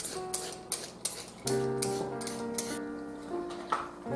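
Background music with sustained notes, over quick scraping strokes of a vegetable peeler down a raw carrot, about three a second, that stop about halfway through.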